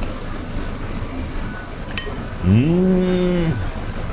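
A man humming a long, closed-mouth 'mmm' of enjoyment while eating. The pitch swoops up, holds for about a second, then drops away.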